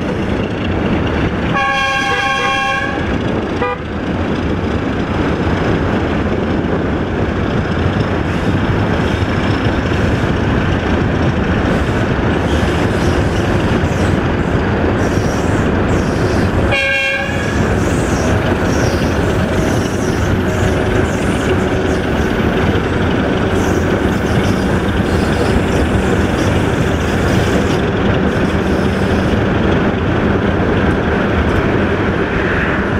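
Two-tone horn of a 060-DA (ST43) diesel locomotive sounding a blast about two seconds in, a short toot just after, and another short blast around seventeen seconds in. Underneath is a steady rumble of road and wind noise from a vehicle pacing the train.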